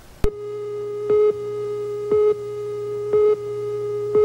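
Line-up tone from the slate at the head of a 1987 videotape: a click, then a steady buzzy tone with a louder beep about once a second, four times, cutting off suddenly just after the last.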